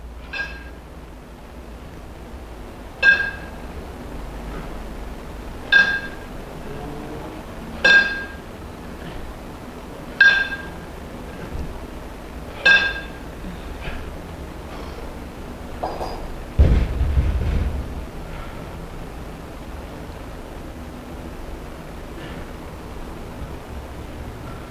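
A pair of kettlebells clinking together with a bright metallic ring, six times about two and a half seconds apart, once on each overhead rep. Then a heavy thud as the bells are set down on the wooden floor.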